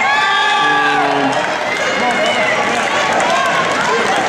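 Crowd cheering and shouting with long held yells, greeting a wrestler's pin fall.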